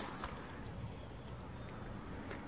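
Steady, faint outdoor background hiss with a few light ticks.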